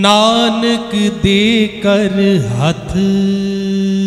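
A man singing Gurbani shabad kirtan, entering loudly with an ornamented phrase of quick pitch turns. About three seconds in he settles on one long steady note.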